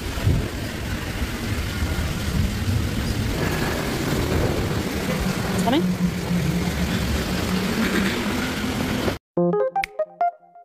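Urban street ambience: a steady rumble and hiss of passing traffic. About nine seconds in it cuts off abruptly and keyboard music starts.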